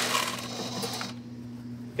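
Corn kernels rattling and clicking inside a grain moisture tester as the sample falls through and settles in the test cell, for about a second, over a steady low hum.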